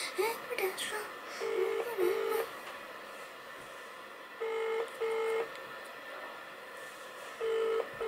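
Phone ringback tone played through the phone's loudspeaker while a call waits to be answered: pairs of short beeps, a double ring about every three seconds, three times.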